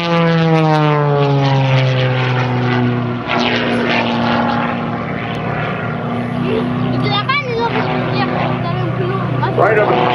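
Propeller engine of a single-engine aerobatic airplane droning overhead, its pitch falling steadily over the first three seconds as it passes, then holding at a lower steady drone.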